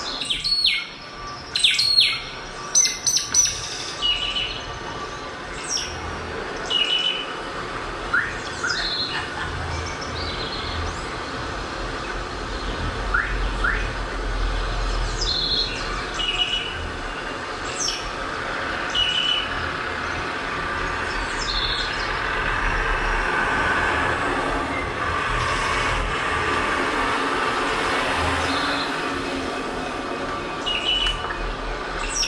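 Birds chirping in short, scattered calls, loudest and most frequent in the first few seconds, over a steady background hum and a low rumble that swells in the second half.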